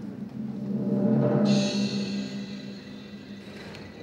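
Short dramatic music cue for the ogres' entrance. A deep drum-like rumble swells over the first second and then slowly fades, and a high shimmering layer comes in about a second and a half in and stops shortly before the end.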